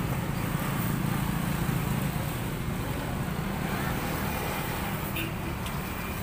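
Road traffic: motorcycles and a motorcycle-sidecar tricycle passing, a steady low rumble of engines and tyres that is a little louder in the first couple of seconds.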